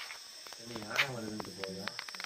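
Night crickets chirping steadily in forest grassland, with low voices and a single sharp click about a second in.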